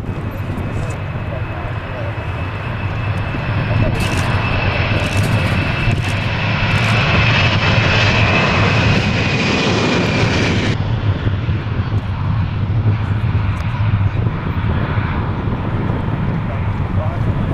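Boeing 747-400ER's four turbofan engines at takeoff thrust: a loud jet roar that builds over the first few seconds, with a high fan whine that sags slightly in pitch. The whine and upper hiss cut off suddenly about eleven seconds in, leaving the lower roar.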